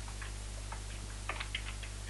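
Computer keyboard typing: a quick run of light key clicks, busier in the second half, over a steady low hum.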